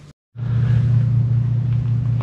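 After a brief cut to silence at the start, a steady low hum of an engine running at idle.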